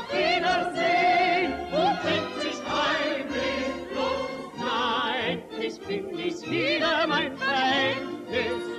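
Old record of a German popular-song medley: a melody sung with strong vibrato over instrumental accompaniment with bass notes. The singing carries no clear words.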